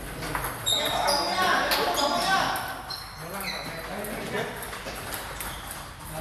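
Table tennis ball clicking sharply against paddles and the table in quick, irregular hits, over people talking.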